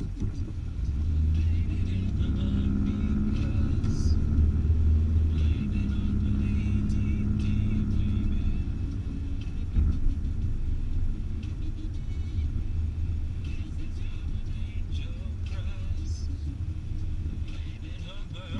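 Car engine and road noise heard from inside the cabin, a steady low rumble with an engine hum that picks up about a second in as the car gets going after a turn. A single short knock sounds about halfway through.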